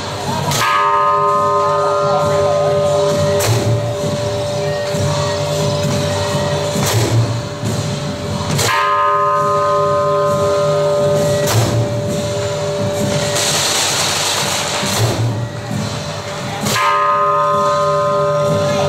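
A large temple bell struck about every eight seconds, each stroke ringing on for several seconds, with sharper strikes and low thuds in between.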